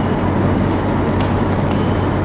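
Steady background hiss with a low hum, and faint short scratches of chalk on a blackboard as a heading is written.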